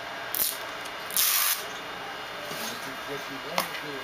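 Trading-card box packaging being opened by hand: a short scraping hiss about a second in, with lighter rustles before it and a small click near the end.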